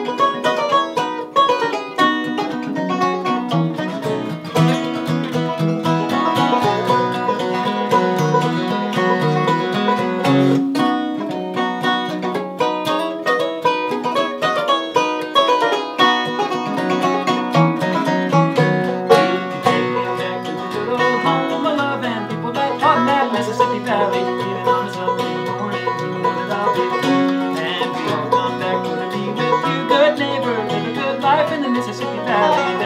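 Instrumental intro of a bluegrass-style tune, played together on acoustic guitar, banjo and hammered dulcimer. It runs at a steady tempo with quick picked and struck notes throughout.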